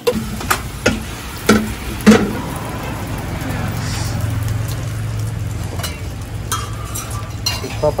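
Eggs sizzling on a hot flat iron griddle while a metal spatula scrapes and clanks on the pan several times in the first couple of seconds, the loudest about two seconds in. A steady low hum runs under the second half.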